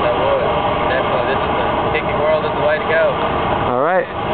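A steady, even rushing noise with a few faint snatches of voice in it, and a voice starting up near the end.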